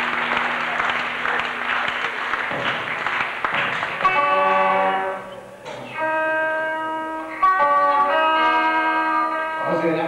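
Audience applause in the hall for about four seconds, then an electric guitar sounding held chords, each ringing about a second with short gaps. Poor-quality VHS audio.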